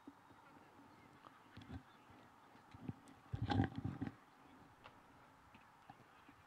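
Faint open-air ambience of a grass sports field, with a few faint clicks and one short, louder burst about three and a half seconds in.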